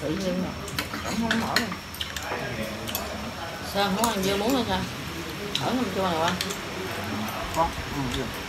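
Chopsticks, spoons and forks clinking and tapping against ceramic bowls and plates as people eat, a scatter of short sharp clicks, with brief low voices in between.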